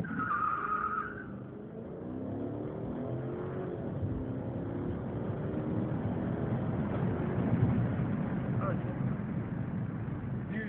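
Chrysler 300C accelerating hard from a standstill, heard from inside the cabin: a brief high squeal at the launch, typical of tyres breaking traction, then the engine note climbs in pitch as the car gathers speed.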